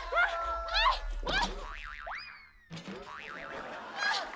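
Comic cartoon sound effects over music: a whistle glide that rises sharply and then sinks about two seconds in, followed by a wobbling boing.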